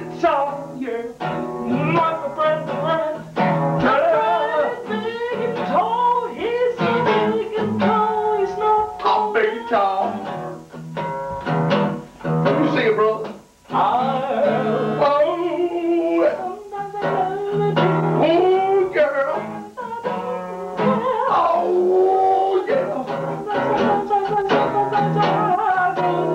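Male voices singing an improvised song over a strummed acoustic guitar, breaking off briefly about halfway through before carrying on.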